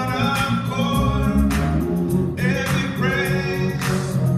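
Gospel praise singing, with long held notes over a steady low accompaniment.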